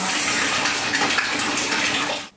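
Water running from a tap into a bathtub, filling it, with a steady rushing splash.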